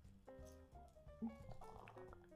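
Very faint background music: soft melodic notes moving from one pitch to the next.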